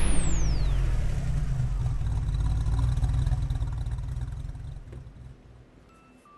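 Intro sound effect: a high whistle sliding down in the first second, over a low rumble left from a boom just before, which fades out about five seconds in.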